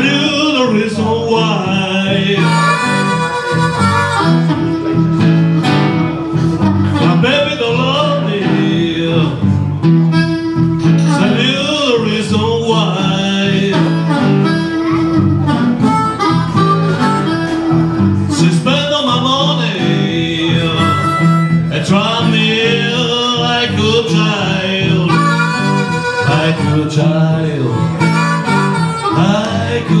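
Live blues on a metal-bodied resonator guitar and a harmonica, with a man singing over them.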